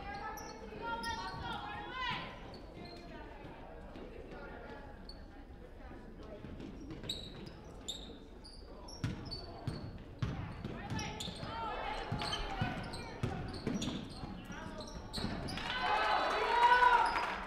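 A basketball bouncing on a hardwood gym floor amid short high shoe squeaks and indistinct voices, all echoing in a large gym. The voices grow louder near the end.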